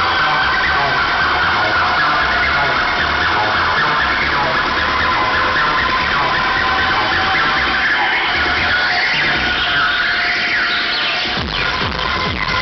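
Loud acid techno over a festival sound system, with a steady kick drum under high sustained synth tones. The low end thins out for a few seconds near the end, then the beat comes back in.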